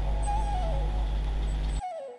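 Background instrumental music: a flute-like melody stepping down in pitch over a low sustained drone. The drone cuts off suddenly near the end and the melody fades.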